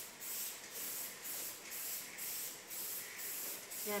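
Aerosol spray can being sprayed onto a wall in short repeated hissing bursts, about two a second.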